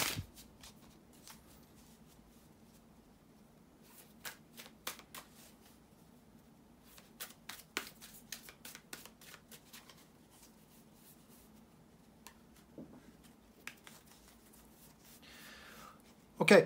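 A deck of tarot cards being shuffled and dealt by hand: faint scattered flicks and taps of cards, coming in small clusters.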